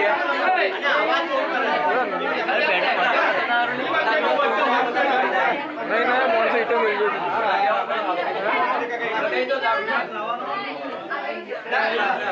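Several men talking over one another: steady overlapping chatter.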